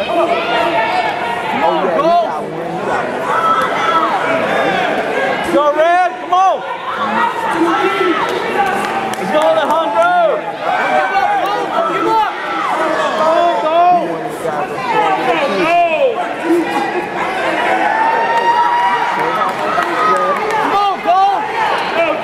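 Boxing crowd shouting and talking over one another, many voices at once and none standing out.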